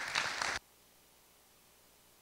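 Audience applause just starting, cut off abruptly about half a second in, followed by near silence.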